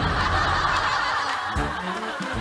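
Lightning-strike sound effect: a crackling, buzzing hiss that fades out after about a second and a half.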